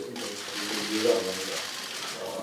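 A man's voice over a hearing-room microphone, mostly a pause between phrases filled with a steady hiss, with a few words about halfway through.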